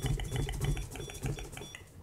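EMF detector alarm buzzer beeping rapidly, about four short beeps a second, as it picks up an electromagnetic field; the beeping stops near the end as the field reading drops away.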